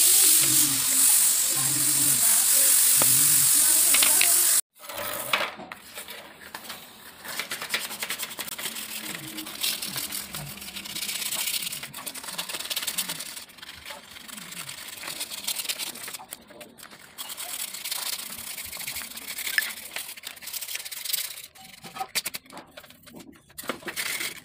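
A loud, steady hiss for about the first four and a half seconds that cuts off abruptly. Then a long run of quick, irregular scraping strokes as a hand tool works along the edge of a thin steel strip.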